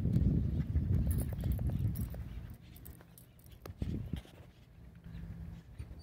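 A dog moving about close by, with scattered sharp clicks and taps and a single louder knock about four seconds in; a low rumble fills the first two seconds.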